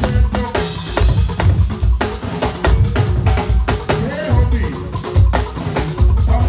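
Live band playing: a drum kit keeps a steady beat with a heavy kick drum under keyboard and other pitched instruments.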